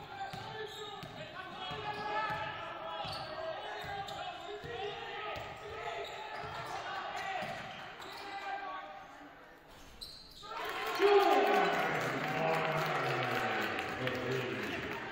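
A basketball dribbling on a hardwood gym floor while players call out on court. About ten seconds in, the crowd and bench break into a loud cheer as the home team scores a basket.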